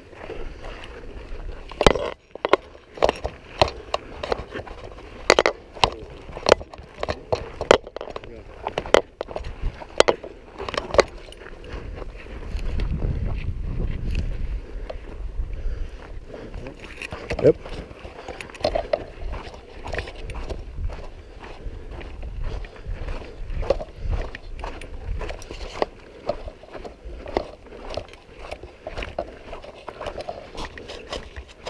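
Irregular clicks and knocks of a soldier's rifle and gear, with footsteps on dirt, as he moves in kit along a building wall. Near the middle there is a stretch of low rumble lasting a few seconds.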